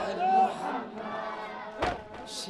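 A crowd of men calling out, with one voice loudest near the start, and a single sharp knock near the end.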